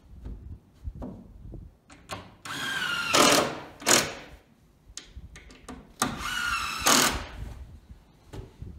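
Cordless power drill running twice, each time for about a second and a half with a high motor whine, as screws are driven into the wall boards; light knocks and clicks of handling between the runs.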